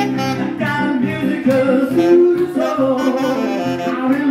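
Alto saxophone playing a lead line over piano accompaniment in an upbeat rock and roll song, between sung lines.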